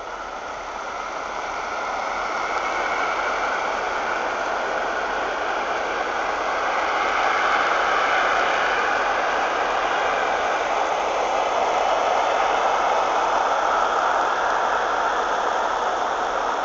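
Snowmaking guns running, a steady rushing noise that grows louder over the first few seconds and then holds.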